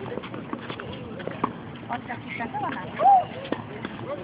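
Children's voices chattering and calling out, with scattered sharp taps and knocks; the loudest is a short high-pitched call about three seconds in.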